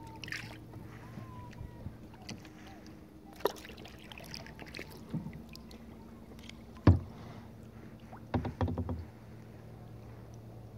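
A small boat moving slowly on calm water, with light water drips over a low steady hum and a few sharp hollow knocks on the hull: a single knock about a third of the way in, the loudest knock about seven seconds in, and a quick run of knocks near the end.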